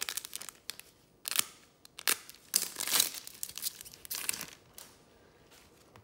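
Wrapper of a trading sticker-card pack crinkling and tearing as it is ripped open by hand, in a run of sharp crackles that thins out over the last second or so.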